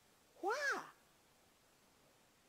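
A single drawn-out spoken "Why?", its pitch rising and then falling, followed by near silence: room tone.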